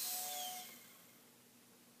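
Mini Vapor ultra-micro RC plane's tiny electric motor and propeller whining on a throttle test, then winding down and fading out about a second in.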